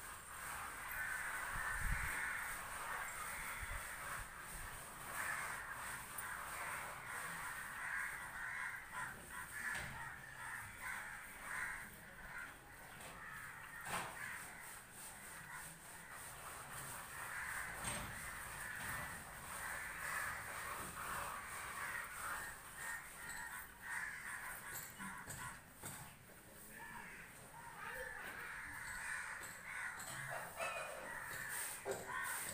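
Crows cawing repeatedly, with a faint steady high-pitched tone underneath.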